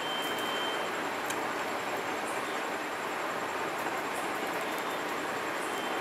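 A steady, even hiss of background noise with no rhythm or pitch, and a few faint ticks.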